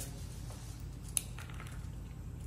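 A single short, sharp click about a second in, with a fainter tick just after, as the cap of a Sharpie marker is pulled off, over a steady low room hum.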